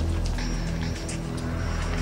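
Tense dramatic background score on a low sustained drone, with a car engine running underneath.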